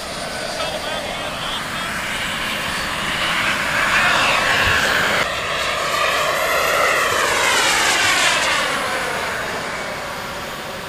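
Radio-controlled model jet flying past, its turbine running as a steady roar that builds through the first half and drops off suddenly about five seconds in. It then swells again with a sweeping, phasing whoosh as the jet passes before easing off near the end.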